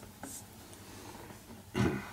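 Faint strokes of a marker pen on a whiteboard as an answer is double-underlined, over quiet room tone. A brief louder sound comes near the end.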